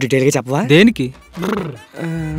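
A man's voice crying out in broken, pitch-bending bursts, without clear words. A low music beat comes in under it.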